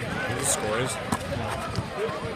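Basketball dribbled on an asphalt court, a few sharp bounces, over the chatter of a crowd of spectators.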